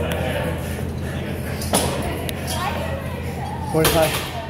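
Gym room sound: background voices over a steady low hum, with a sharp knock a little under halfway through and another just before the end.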